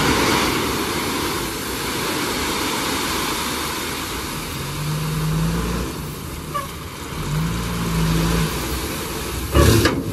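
Tata tipper truck's diesel engine running and revving twice while its raised bed tips out a load of gravel, with the steady rush of gravel sliding off the bed. A sharp loud bang near the end.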